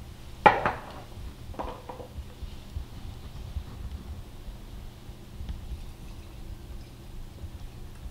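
Glass canning jars and a plastic canning funnel being handled on a granite countertop: a sharp clink about half a second in, the loudest sound, and a smaller clink with a short ring about a second later, then only faint small knocks.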